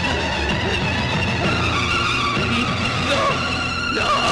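Dramatic background music from a film's action climax, mixed with sound effects, with steady high tones coming in about a second and a half in.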